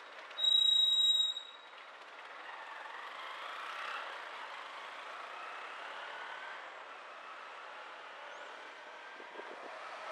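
A vehicle's brakes squeal once, high-pitched and steady, for about a second near the start. Then comes a steady hiss of city traffic, with faint engine notes rising and falling, heard from a car stopped at an intersection.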